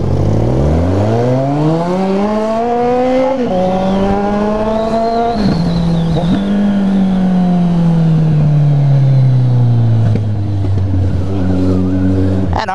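Motorcycle engine with its muffler removed, leaving only the bare pipe, accelerating hard from a stop: the note climbs through first gear, drops at an upshift about three seconds in, climbs again and drops at a second shift about five seconds in. The note then falls slowly as the rider eases off and levels to a steady, lower note near the end.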